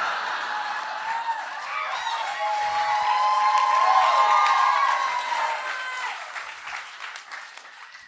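Live audience applauding after a punchline, with voices calling out through the clapping. It swells to a peak about halfway and dies away near the end.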